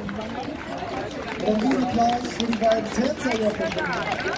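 People talking nearby, several voices overlapping in conversation.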